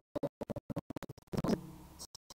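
Crackling static from a faulty microphone: many short, choppy bursts cut off sharply. About a second and a half in comes a longer, louder stretch with a low buzz.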